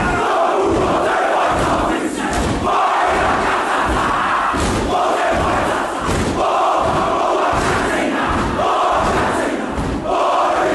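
Haka performed by a large group of schoolboys: many male voices shout the chant together in short phrases, over rhythmic thumps of stamping and slapping.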